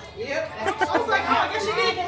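A woman laughing, with people chattering in the background.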